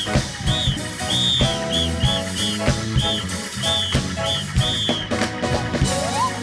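Live gospel band music with a steady drum beat. Over it, a high whistle-like tone repeats in short notes, each rising and falling, about two a second, stopping about five seconds in.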